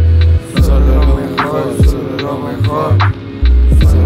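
Instrumental lo-fi hip-hop beat with no vocals: deep sub-bass notes that start and stop, a steady held drone, and a pitched sweep falling from high to low about once a second.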